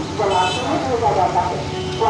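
A voice plays over the loudspeaker of a campaign publicity van against street traffic, and a short vehicle horn toots about half a second in.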